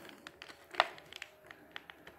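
Clear plastic blister tray of a toy package being handled, giving a few faint crinkles and light clicks, with one sharper click a little under a second in.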